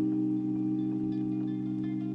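Background music: a steady held chord with a few faint higher notes over it.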